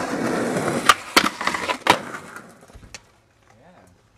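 Skateboard wheels rolling on rough asphalt, then a sharp pop of the tail about a second in, the tail scraping along a concrete step edge in a backside tailslide, and a loud clack of the landing shove-it just before two seconds. The wheels roll on and fade out, with one more small clack near three seconds.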